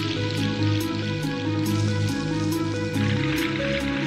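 Intro music with held low notes and sustained tones.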